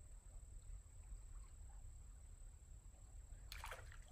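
Near silence by a creek: a faint steady low rumble and background haze, broken about three and a half seconds in by one short burst of noise as a bait trap is handled at the water's edge.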